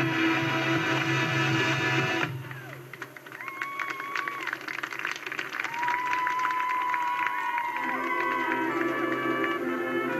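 Marching band music, played back from a VHS tape. The full band holds a loud chord that cuts off sharply about two seconds in. A quieter passage of high melodic lines follows, and low sustained notes come back in near the end.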